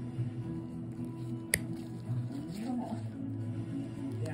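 Toenail nippers snap once through a thick toenail about one and a half seconds in, a sharp click over steady background music.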